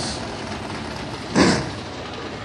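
Steady race-car engine noise at the track, with one short falling sound about one and a half seconds in.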